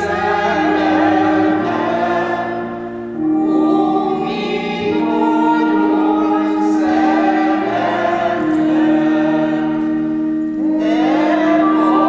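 A church hymn: voices singing a melody over long, steady held chords, typical of organ accompaniment.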